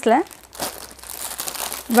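Clear plastic garment packets crinkling as they are handled, a rustle lasting about a second and a half.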